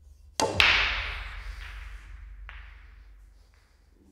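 Two sharp hits close together about half a second in, followed by a hissing rush that fades over about two seconds, with a few fainter knocks after it.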